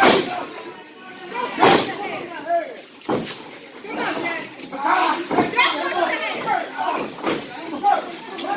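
Sharp smacks of blows landing between wrestlers in the ring, about five spread over the stretch, amid the voices of the crowd calling out.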